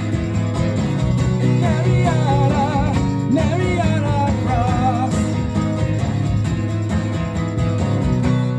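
Strummed acoustic guitar over layered looped backing in an instrumental break of the song. A wavering melody line rides on top for a few seconds from about a second and a half in.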